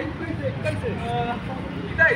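Outdoor murmur of scattered voices over a low, steady rumble, in a lull between loud shouted or sung lines.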